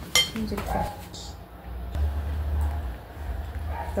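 A metal fork clinks sharply once against a dish just after the start, with a brief ring. Quieter eating and handling sounds follow, with a low rumble in the second half.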